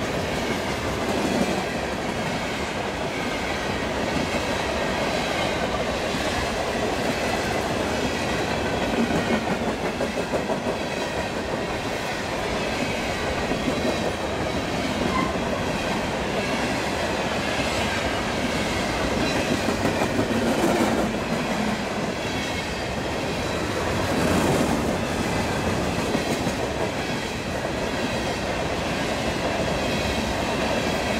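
Railroad cars rolling past, their wheels clattering steadily over the rail joints.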